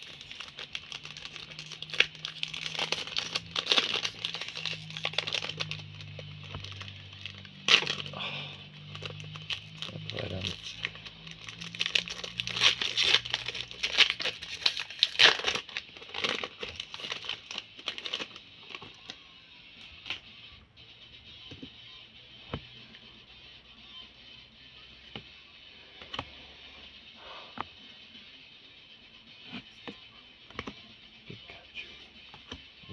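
Pokémon booster pack wrapper being torn open and crinkled in the hands, with dense sharp crackles for about the first eighteen seconds. After that it goes quieter, with only scattered light clicks as the cards are handled. Quiet background music plays underneath.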